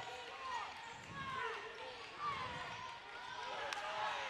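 Basketball game sounds from the court: a ball being dribbled on the hardwood floor, sneakers squeaking, and faint voices in the gym, with one sharp click near the end.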